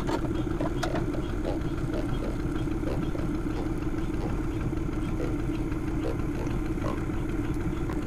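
Boat motor idling with a steady, even hum and no change in speed.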